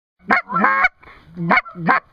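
Loud goose honks: four calls in quick succession, the second one longer and drawn out.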